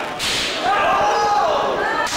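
A sharp slap of an open-hand chop landing on bare skin in the ring corner, followed by several voices from the crowd rising into a long, drawn-out shout.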